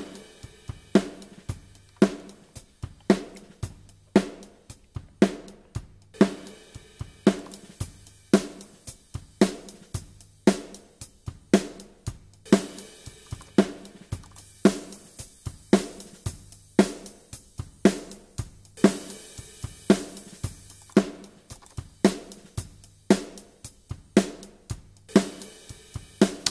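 A recorded acoustic drum kit groove heard through its pair of overhead mics: kick, snare and hi-hat in a steady pattern with a strong hit about once a second. In some stretches the top end turns brighter and fizzier as saturation brightening is compared with a hi-shelf EQ on the overheads.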